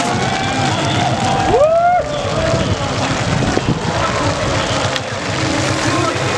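Stadium crowd noise: a steady din of many voices cheering and calling out, with one loud rising-and-falling shout about a second and a half in.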